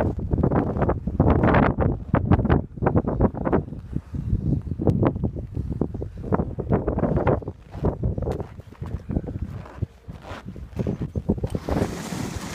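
Wind buffeting the microphone in irregular gusts, a rough noise that rises and falls.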